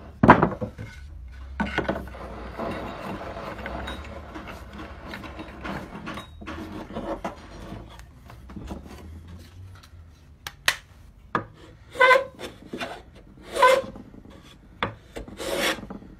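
A sharp knock from a mallet tapping a wooden board, then several short strokes of a hand plane's freshly sharpened blade cutting across the end grain of the board. The strokes come near the end.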